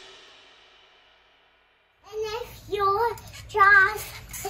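The ringing tail of a piece of music fading out, a moment of silence, then a young child singing short, wavering phrases from about two seconds in.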